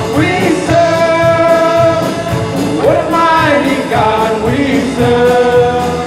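Live English worship song: a group of male and female singers singing together in held notes, over an electric guitar band with a steady beat.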